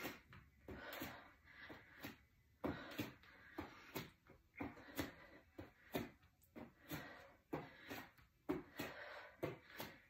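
Hands tapping the shoulders and landing back on an exercise mat in a plank, a soft tap roughly every half second, with breathing between the taps.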